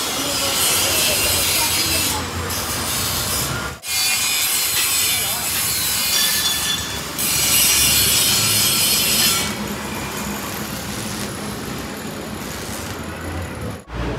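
Metal fabrication noise: a steel tube being cut, then stick arc welding with a steady crackle and hiss. The sound breaks off abruptly about four seconds in and again near the end, where it changes.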